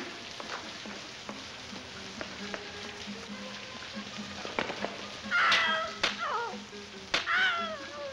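Steady hiss of falling rain with faint music underneath. About five seconds in come two high, falling, wavering cries, a second or so apart, which are the loudest sounds.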